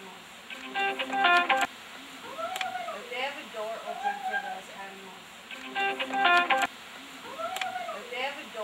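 A short looped sound sample repeating about every five seconds: wavering pitched calls that rise and fall, each cycle ending in a brief burst of stacked tones that cuts off sharply.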